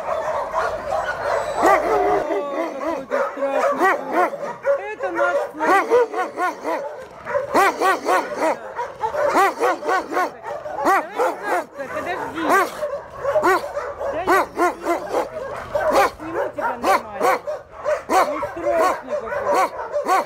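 Many dogs barking and yelping at once, a dense chorus of short overlapping barks with no break.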